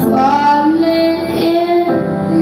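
A slow love song playing, a high voice singing long held notes over soft accompaniment.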